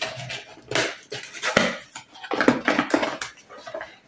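Packaging being rustled and crinkled by hand as an item is unwrapped: a run of irregular crackles and handling noises, with a few faint murmured vocal sounds.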